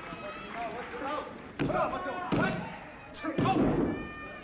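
A few dull thuds on the wrestling ring's mat as a pin is being made, with voices calling out in between.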